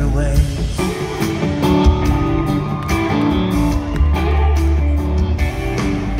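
Live country-rock band playing on stage: guitars over a heavy bass line and drums, as heard loud from the audience.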